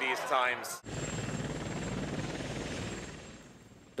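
Steady engine and rotor noise from an aircraft filming from the air, with a low rumble and a thin high whine, fading away over the last second. A man's voice finishes the first second before the sound cuts in.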